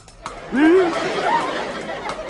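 Comic novelty-song vocal: one voice scat-singing gibberish, a sliding 'mah' about half a second in, then a quick, chatter-like babble of nonsense syllables.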